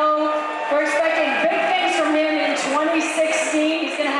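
A woman's voice announcing over a microphone in the hall, with long drawn-out vowels.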